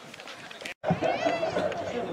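Faint outdoor chatter that cuts out completely for an instant a little under a second in, then comes back as louder shouting and calling voices of people around a football pitch.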